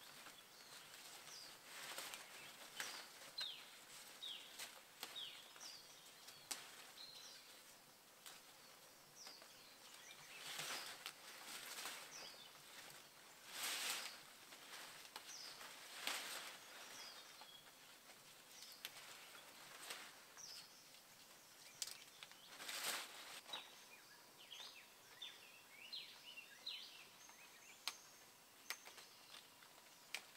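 Faint rustling of leafy vines and branches as flowers are pulled off by hand, in several brief rustles, with small birds chirping throughout.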